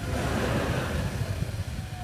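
Studio audience reacting with a wash of crowd noise that fades after about two seconds.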